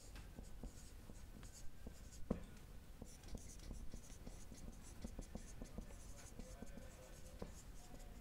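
Dry-erase marker writing on a whiteboard: a run of faint, short squeaky strokes.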